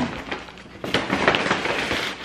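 Paper shopping bag rustling and crinkling as an item is pulled out of it, a run of crackly rustles that grows denser about a second in.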